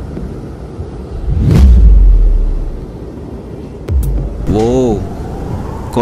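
A deep rumbling swell that builds and fades about a second and a half in, the loudest sound here, then a man's voice laughing "ha ha" near the end.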